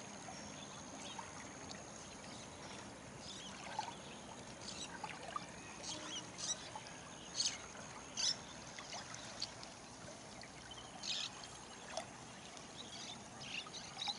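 River water running, with a scatter of short, sharp high-pitched sounds, the loudest about halfway through.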